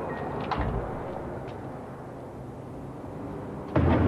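Pickup truck door shut with a single solid thump about half a second in, over steady outdoor background noise.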